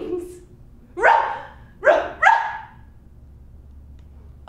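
A woman's voice giving three short, sobbing cries, each falling in pitch: the first about a second in, the last two close together near the middle.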